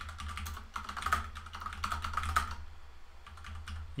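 Typing on a computer keyboard: a quick run of key clicks that thins out in the second half.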